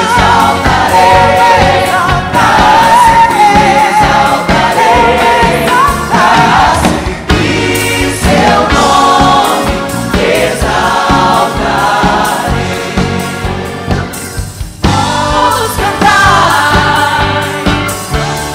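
Female lead singer and gospel-style choir singing a Christmas hymn in Portuguese over full instrumental backing. The music thins briefly about fifteen seconds in, then comes back at full strength.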